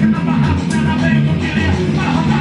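Amplified rock band rehearsing in a small room: electric guitar and bass guitar playing steadily, with a vocalist singing into a microphone.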